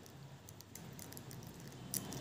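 Knitting needles clicking faintly and irregularly as knit stitches are worked, with one sharper click near the end.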